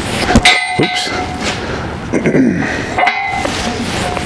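New leather latigo strap being worked back and forth over a steel pipe rail, knocking and rubbing against it so the pipe clangs and rings, with sharp strikes about half a second in and again near three seconds. The working breaks down the stiff waxed finish to make the leather softer and more pliable.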